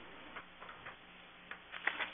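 Faint, irregular small clicks, about six in two seconds with the sharpest near the end, over a quiet steady room hum.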